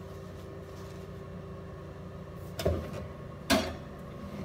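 A metal pan being put back into an oven: two sharp, ringing knocks about a second apart in the second half, as the oven door and pan rack are handled, over a steady background hum.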